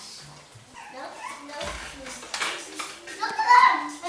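Young children's voices calling and squealing during play, loudest a little after three seconds in.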